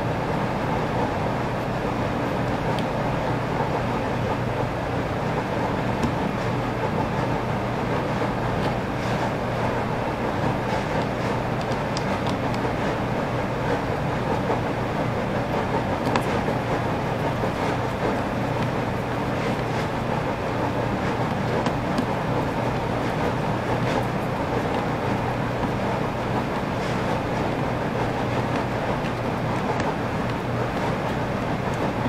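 Steady mechanical noise, an even rumble and hiss with a low hum, holding one level throughout, with a few faint light ticks on top.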